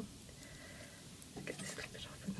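Faint soft handling noises of fingers picking the hairy choke off a cooked artichoke heart, with a short cluster of small clicks and rustles about a second and a half in.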